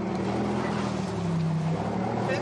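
Heavy armoured wheeled vehicle's engine running steadily with a low hum, its pitch dipping slightly past the middle, over a wash of wind-like noise.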